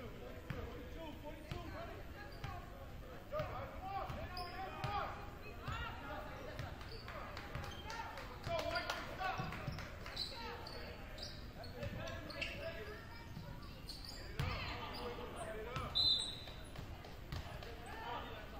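Basketball bouncing on a hardwood gym floor during play, with brief high sneaker squeaks and shouting voices echoing around the gym.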